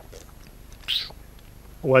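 A man drinking from a bottle: one short sip about a second in, then he starts speaking near the end.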